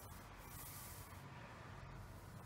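Faint hiss of a small foam paint roller and a brush stroking over wet paint, over a steady low hum.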